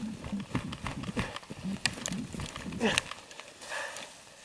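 A man laughing in short, breathy bursts, ending in a louder laugh and a 'yeah' near the end, with scattered clicks and knocks from movement in the snow. No engine is running.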